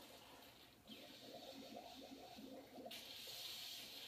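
Faint, muffled sound of a television soundtrack heard across a small room: indistinct voice-like sounds from about a second in, then a steady hiss for the last second.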